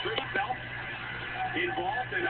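Wrestling broadcast audio: shouting or commentary voices over arena noise, with two short knocks in quick succession near the start.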